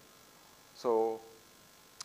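A faint, steady electrical hum, with one drawn-out spoken "so" from a man about a second in.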